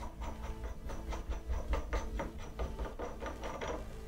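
Steel top nut being unscrewed by hand off the threaded arbour of a spindle moulder cutter block, giving a quick, irregular run of light metallic ticks and scrapes from the threads.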